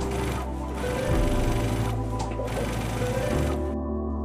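Brother domestic sewing machine running in stretches, pausing briefly twice and stopping near the end, as it stitches gathering stitches along the waist of a satin skirt, under a background music track.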